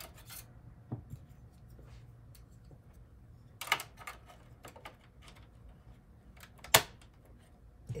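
Light metal clicks and taps of hand work on a computer case's PCI slot screw and bracket as the screw is taken out. A few sharper clicks stand out, the loudest near the end.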